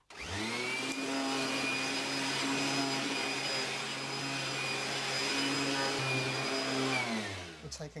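Vacuum cleaner for sampling mattress dust, switched on and spinning up quickly to a steady motor hum with a high whine, drawn over a mattress. Near the end the motor winds down, falling in pitch.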